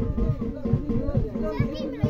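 Live band music with a steady drum beat, several beats a second, under the voices of a crowd, children among them, talking.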